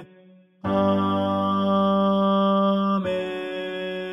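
Closing 'Amen' of a four-part hymn practice track with the tenor part to the fore. After a short gap, one long held chord sounds, then a second, slightly softer held chord about three seconds in.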